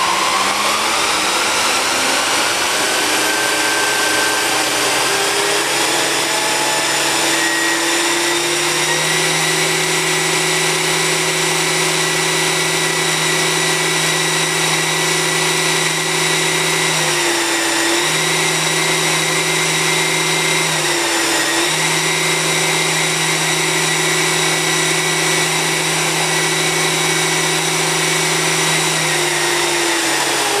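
Model helicopter built into an AH-1S Cobra scale fuselage, spooling up and running on the ground. Its motor and gear whine rises over the first few seconds with the rotor whirr, then holds steady, dips briefly twice and begins to wind down near the end. This is the first test run of a newly installed flex-drive tail rotor.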